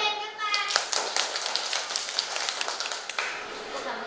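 A child's voice briefly, then a classroom of young children clapping together in a quick patter for about two and a half seconds, thinning out near the end.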